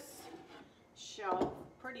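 A woman speaking a few words, with faint handling noises from ornaments being set on a wooden shelf in the quieter moments.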